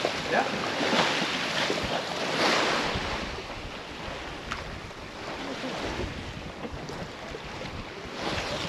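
Wind buffeting the microphone over sea water rushing past the hull of a sailing yacht under sail, in surges that are louder over the first few seconds and then ease.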